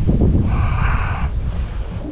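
Wind buffeting the action camera's microphone: a heavy, uneven low rumble, with a short hiss from about half a second to just past one second in.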